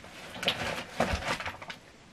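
Handling noise from a hairdryer being picked up and moved about: a few short knocks and rustles, the dryer not running.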